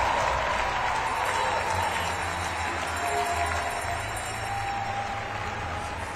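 Indoor arena ambience: a crowd murmuring with some applause, and music playing in the hall underneath.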